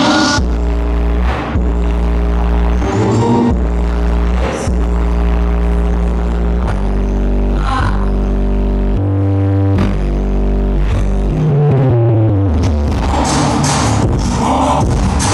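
Music played loud through a Sony GPX88 mini stereo system as a bass test: deep bass notes held for a second or more each, stepping from pitch to pitch, with a falling bass slide near the end.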